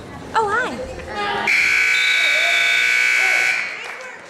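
Gym timer buzzer sounding a steady electronic tone for about two seconds, signalling the end of a wrestling period. Just before it, a voice calls out briefly.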